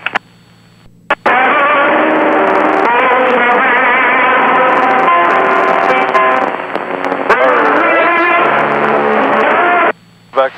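Loud music heard over the aircraft's radio through the headset, thin and cut off in the treble like a radio transmission: someone is transmitting music on the air traffic control frequency. It cuts in about a second in after a brief quiet gap and stops abruptly at the end, over a steady low hum.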